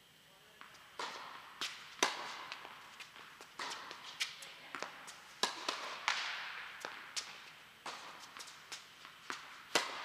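Tennis balls struck by racquets and bouncing on an indoor hard court: a rally of sharp pops starting about a second in, each one echoing in the large hall.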